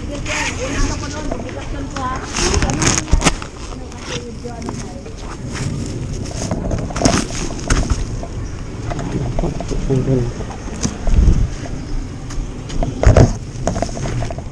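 Close handling noise of a zippered bag being opened and rummaged through: a zipper rasp, cloth rustling, and scattered clicks and knocks, heaviest a couple of seconds in and again near the end.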